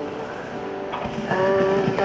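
A snowboard scraping and sliding over packed snow and ice, mixed under a music soundtrack whose sustained chord comes in about halfway through.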